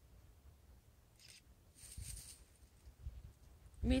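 Wind buffeting the microphone as a low, uneven rumble, with two brief soft rustles, one about a second in and a longer one about two seconds in.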